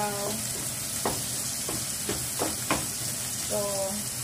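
Pork and sliced onions sizzling in oil in a frying pan, with a spatula scraping and knocking against the pan several times as they are stirred.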